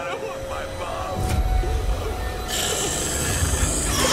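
Low rumbling sound effect from a horror cartoon's soundtrack, building about a second in, with a hissing noise joining about halfway through.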